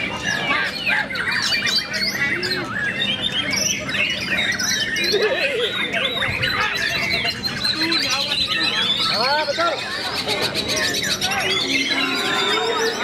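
White-rumped shama (murai batu) singing a fast, varied song: a dense, unbroken run of whistles, chirps and rising and falling glides.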